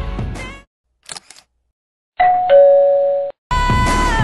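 Background song fades out, followed by a few quick mouse clicks and then a two-note falling ding-dong chime, the sound effects of a subscribe-button and notification-bell animation. The music comes back in shortly before the end.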